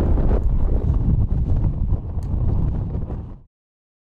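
Strong wind buffeting the microphone: a loud, gusting rumble that cuts off abruptly about three and a half seconds in.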